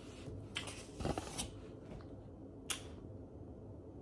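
Quiet room with a few faint rustles and soft clicks, handling noise; the sharpest click comes near the middle.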